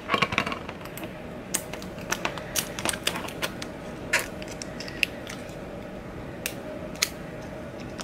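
Fingers and fingernails handling a small acrylic keychain covered in vinyl and transfer tape: irregular light clicks and scratches, a few sharper ticks, over a faint steady hum.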